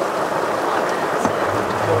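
Heavy downpour: a steady, dense hiss of rain.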